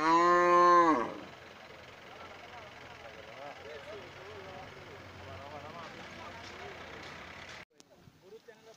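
A cow gives one loud moo, about a second long, held steady and then dropping in pitch at the end.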